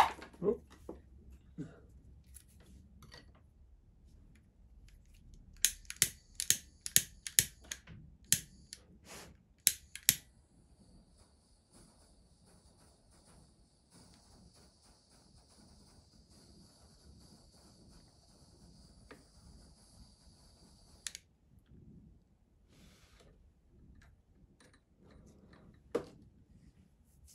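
Small handheld butane torch: its igniter clicks about ten times over four seconds, then the flame lights and hisses faintly and steadily for about ten seconds while shrinking heat-shrink tubing on a wire, cut off sharply with a click.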